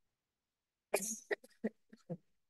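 A woman coughing: silence until about halfway through, then one stronger cough followed by a quick run of short coughs.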